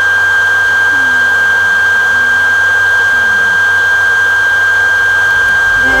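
Loud, steady hiss with a constant high-pitched whine running under everything, like heavy noise on a voice-call microphone line. A faint voice rises and falls in pitch under it about a second in.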